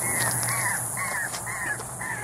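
A bird giving short, harsh caw-like calls over and over, about two a second, over the steady high-pitched buzz of cicadas.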